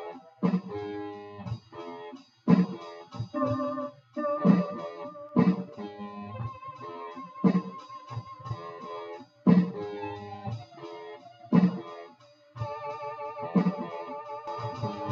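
Instrumental jam built from loops: a repeating drum beat and a looped guitar part, with keyboard notes played over the top.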